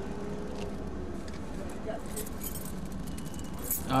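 Steady low rumble of a vehicle engine and road traffic, with faint light clinking in the second half.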